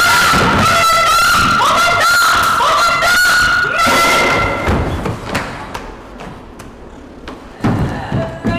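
A woman screaming in long, high cries held for seconds at a time, stopping about four and a half seconds in; then scattered knocks and a loud thud near the end as bodies scuffle on a wooden stage floor.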